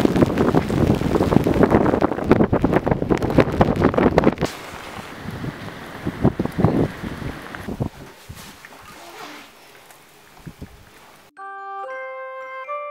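Heavy rain and wind, with a rapid patter of drops close by, loudest in the first four seconds and easing after that. Near the end the rain cuts off and light music with bell-like notes begins.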